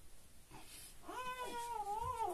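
A domestic animal's long, drawn-out cry, starting about a second in and holding a wavering pitch.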